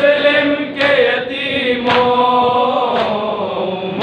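Male voices chanting a noha (Shia lament) with long held notes, crossed by a sharp slap about once a second: the chest-beating of matam in time with the lament.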